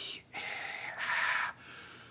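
A man whispering vowel sounds, an unvoiced breathy hiss shaped by the mouth's resonances. The hiss shifts higher in pitch about a second in, as the tongue moves toward a front vowel.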